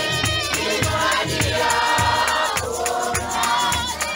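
A congregation of many voices singing together, loud and full, over a steady beat of about two and a half strikes a second.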